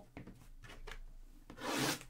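Hands rubbing and sliding over a cardboard trading-card box as it is turned over, with a louder scrape near the end.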